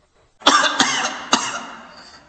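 A person coughing: a rough, hacking cough in three quick bursts that fade away.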